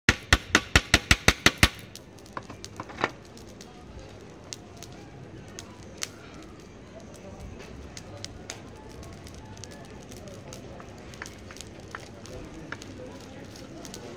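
A metal utensil tapping a clay kebab pot: a quick run of about nine sharp taps in the first two seconds, then scattered lighter clicks over a low background murmur.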